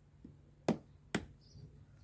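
Two sharp taps about half a second apart: a small hand tool striking a lotus fertilizer tablet to crack it.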